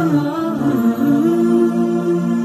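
Background music made of wordless humming voices, singing a short sliding phrase in the first second and then holding long, steady notes.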